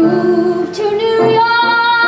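A woman singing a musical-theatre song with piano accompaniment, climbing through short notes to a long held high note about a second in.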